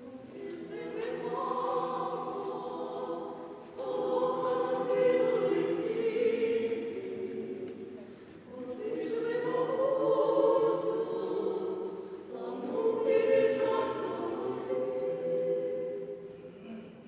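Small vocal ensemble singing sacred choral music a cappella in a church, in four swelling phrases with a short breath between each.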